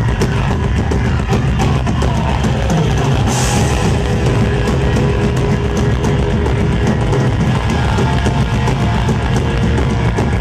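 Thrash metal band playing live, heard from within the crowd: distorted electric guitars over fast, dense drumming.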